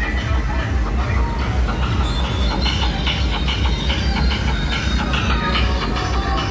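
Steady low rumble of wind and road noise from a moving vehicle, with music and voices mixed in.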